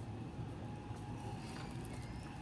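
Quiet supermarket background: a steady low hum with a faint, thin steady tone above it, from the refrigerated display cases and store machinery.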